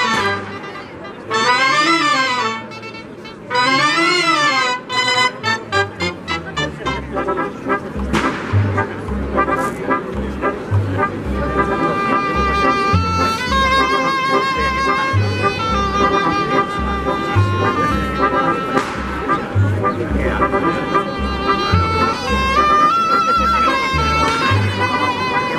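A cobla playing a sardana: a few short, wavering melodic phrases with pauses between them, then, about eight seconds in, the full band of shawms and brass comes in over a steady double-bass beat.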